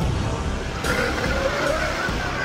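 The low, dense rumble of an explosion sound effect dying away. Just before a second in, a wavering higher sound joins it.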